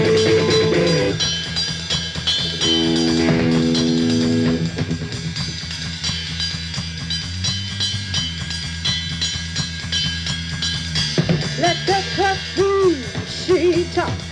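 Live rock band playing: electric guitar holding long notes over bass and drums, then, from about eleven seconds in, a run of quick swooping notes that rise and fall.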